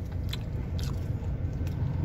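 A person chewing food close to the microphone, with a few short crunching clicks, over the steady low rumble of a car's cabin.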